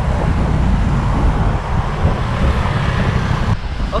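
Steady road traffic noise from motorcycles and cars, with a low rumble of wind, picked up by a camera on a moving bicycle. The hiss thins out abruptly near the end.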